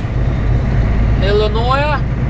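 Steady drone of a semi-truck's engine and road noise inside the cab while driving. Near the end comes a brief pitched voice with rising inflections.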